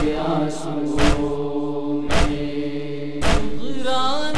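Voices chanting a noha, a Shia lament, in long held notes over heavy thumps about once a second, the matam chest-beating beat of the lament. Near the end a solo voice starts singing with a wavering pitch.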